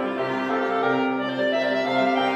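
Clarinet and piano playing a classical chamber sonata live, the clarinet holding sustained notes over the piano, with a change of note about halfway through.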